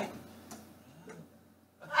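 A brief lull in a room conversation: quiet room tone with a faint click about half a second in and a soft low murmur about a second in, dropping almost to silence just before talking starts again.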